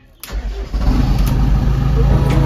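JCB backhoe loader's diesel engine cranked with the key and starting: it fires about a quarter second in, catches and settles into a steady idle within about a second.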